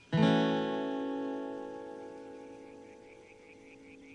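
A single chord strummed on an acoustic guitar, ringing out and slowly fading away over about four seconds.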